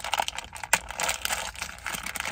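Blind-bag packaging crinkling and crackling as it is handled and opened by hand, with a few sharper crackles, the loudest about a third of the way in.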